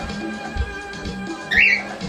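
A Latin song playing from a portable tape player/radio, with a pet cockatiel giving one short, loud, rising chirp about one and a half seconds in.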